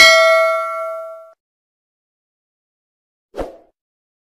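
A bell-like ding sound effect from a subscribe-and-notification-bell animation, ringing out and fading over about a second and a half. A short dull thud follows near the end.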